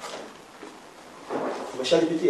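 Paper folder and loose papers being handled on an office desk: a soft rustle, louder about a second and a half in.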